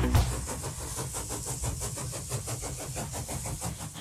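Closing sound of an electronic intro jingle: a low steady rumble with a fast, even flutter laid over it.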